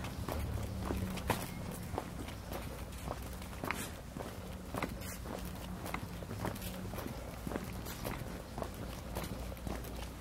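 Footsteps on brick paving at a steady walking pace, about two steps a second, over a low steady hum.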